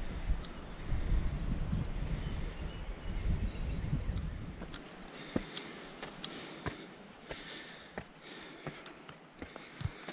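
A hiker panting heavily while climbing a steep, muddy dirt trail, with his footsteps coming as regular short impacts about one and a half a second in the second half. A low rumble of wind on the microphone is heard in the first half.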